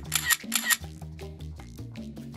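Camera shutter clicks twice in quick succession in the first second, over background music with a steady beat.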